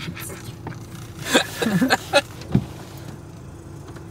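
Engine of a BMW E36 running steadily at low revs, heard from inside the cabin; the engine is still cold and is not being revved.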